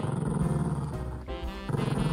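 Black toy poodle growling low with a red toy in its mouth, guarding it from the other dog: two long growls with a short break about one and a half seconds in.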